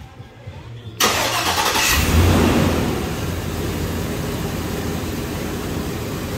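Silver Hummer stretch limousine's engine starting: it comes in suddenly about a second in, rises briefly, then settles into a steady idle.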